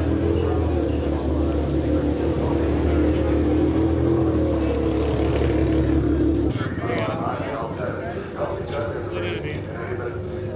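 Porsche race car's engine idling, a steady low drone that cuts off abruptly about six and a half seconds in, leaving the chatter of a crowd.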